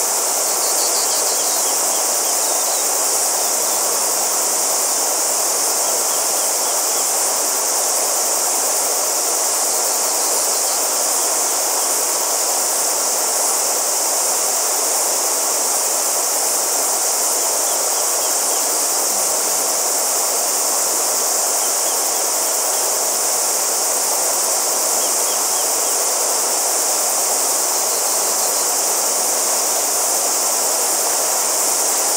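Loud, steady, high-pitched chorus of cicadas over the even rush of a shallow flowing river.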